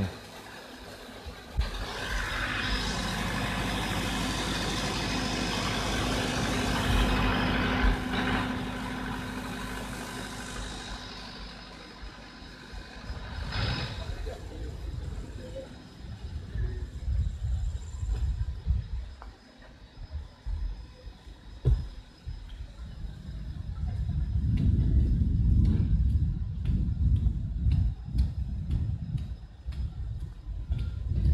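A large motor vehicle, such as a truck, running close by, loudest for the first ten seconds or so, then fading; low rumbling builds again near the end.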